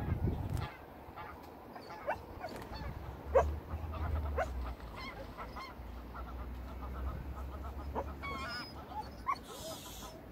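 Scattered short animal calls across the water, goose-like honks a second or two apart, with a short run of calls near the end.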